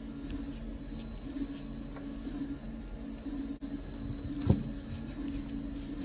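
Small clicks and taps from handling a plastic drill trigger switch and its wires, with one sharper click about four and a half seconds in, over a steady low hum.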